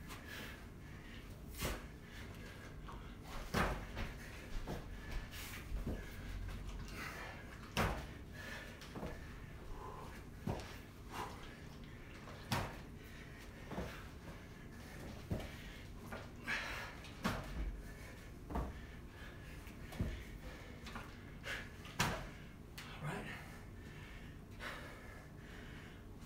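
A man breathing hard through a set of push-ups: short forceful exhalations with light knocks and shuffles of hands and feet on the floor, coming irregularly about a second apart.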